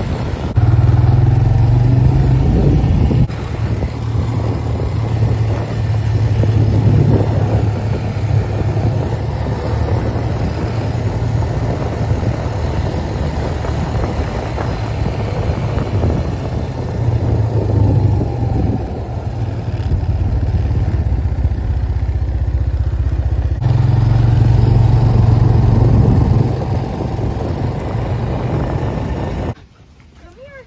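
ATV engine running while riding along, a steady low rumble. It cuts off abruptly near the end.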